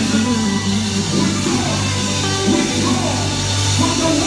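Live gospel praise band music: an electric guitar playing lead over a steady bass line.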